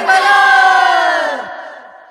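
The chorus of a Marathi devotional song holding one long final shout together, unaccompanied. Its pitch slides down as it fades out, about a second and a half in.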